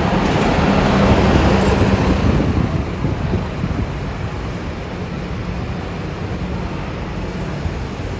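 A diesel city bus passes close by, its engine and rush of air loudest in the first couple of seconds and fading by about three seconds in. Then the Mercedes-Benz Citaro's diesel engine hums steadily as the bus moves slowly forward.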